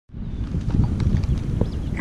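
Low rumbling wind buffeting the microphone, with irregular soft knocks running through it.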